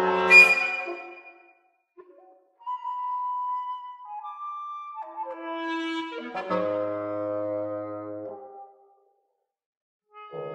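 Woodwind quintet of flute, oboe, clarinet, bassoon and French horn playing live chamber music. A loud chord with a sharp high accent is cut off just after the start; after a pause, one held note enters and the other instruments join in, building to a full sustained chord that stops about a second before the end.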